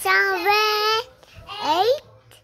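A young girl's high voice in a sing-song: one long held note for about a second, then a quick rising glide near the end.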